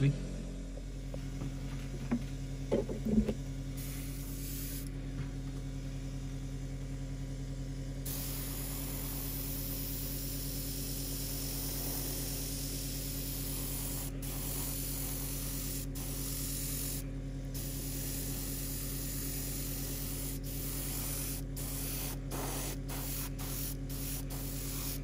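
Airbrush spraying thinned acrylic paint. The hiss comes briefly about four seconds in, then runs steadily from about eight seconds, cutting out for moments several times near the end as the trigger is let off. An air compressor hums underneath.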